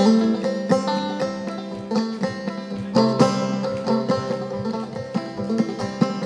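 Banjo played solo in frailing clawhammer style: quick plucked and brushed notes over a steady low ringing note, with a strong accented stroke about once a second.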